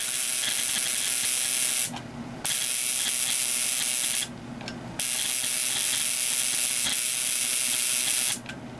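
Relay-buzzer ignition coil driver firing a rapid train of high-voltage sparks across a brass spark gap: a harsh, steady buzz of relay chatter and spark crackle. It cuts out briefly about two seconds in and again just after four seconds, then runs on.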